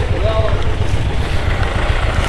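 A motorcycle engine running with a steady low rumble.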